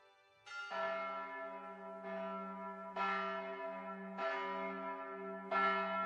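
A church bell ringing, struck about five times roughly a second apart, each stroke ringing on into the next.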